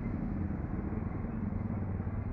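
Steady low engine rumble with a hum and a wash of noise, holding level throughout.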